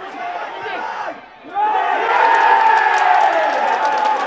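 Football stadium crowd with mixed voices, then bursting into a loud cheer about one and a half seconds in as a goal is scored, with clapping mixed in.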